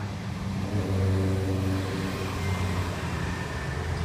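A motor vehicle engine running steadily: a low hum with a few faint tones above it, strongest from about a second in.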